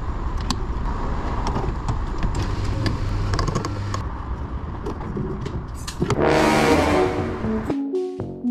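Steady low rumble of vehicle noise on a fuel station forecourt, with light clicks as a van's fuel flap and filler cap are opened. About six seconds in a louder, brief vehicle sound comes in, and electronic music with a beat starts near the end.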